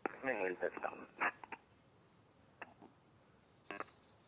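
A short stretch of speech in the first second and a half, then a few brief blips later on.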